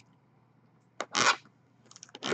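Handling noise on a sealed cardboard trading-card box: a sharp click about a second in, followed at once by a short scraping rustle.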